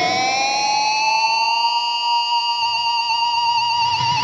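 Fender Starcaster electric guitar played through a Boss IR-200 amp and cabinet simulator: one long sustained lead note that rises in pitch over the first second and a half, is held, and then gets vibrato near the end.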